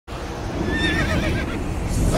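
A horse neighing: one wavering, falling call starting under a second in, over a steady low rumble.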